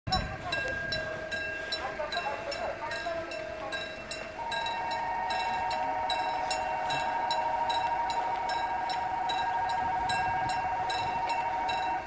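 Railway level-crossing warning bell ringing in a rapid even rhythm, about two and a half strikes a second. About four seconds in, a long steady two-note tone starts over it and holds.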